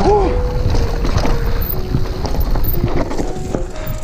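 Mountain bike rolling over a rough gravel trail: tyres crunching and the frame and components rattling over bumps, with wind rumble on the camera microphone and a few brief squeaks.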